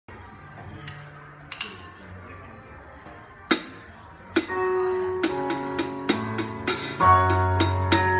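Drum kit played along to backing music: a few light taps, then a sharp stick hit about three and a half seconds in. Just after, the music comes in with held chords, and evenly spaced drum strokes start about five seconds in, with a bass line joining near the end.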